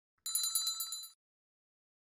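Notification-bell sound effect from a subscribe-button animation: a short, bright, bell-like ring that starts about a quarter of a second in and stops after just under a second.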